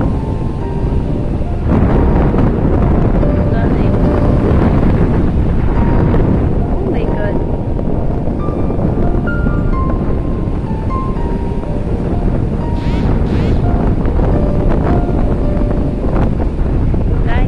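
Wind blowing on the microphone over waves breaking and washing up a sandy beach, getting louder about two seconds in. Soft background music of short held notes plays underneath.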